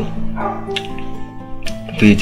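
Background music with steady held instrumental notes and a couple of short sharp clicks, between sung phrases.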